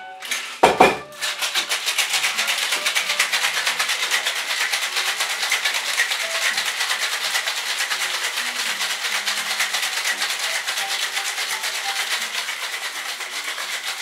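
Cocktail being shaken in a shaker, a fast, even run of scraping strokes that lasts for about twelve seconds, after a single thump about half a second in.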